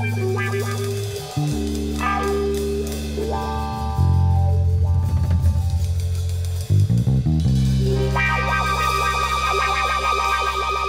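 A live rock band playing without vocals: electric guitar, bass guitar and drum kit. Long held bass notes change every second or two, and the playing gets louder about four seconds in.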